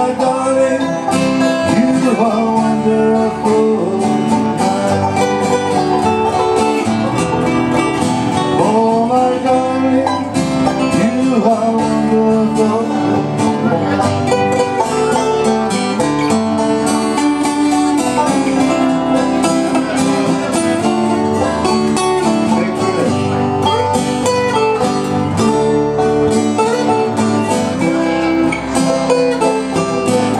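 Live acoustic band of banjo, acoustic guitars and electric bass playing a steady, unbroken instrumental passage, with some bent notes.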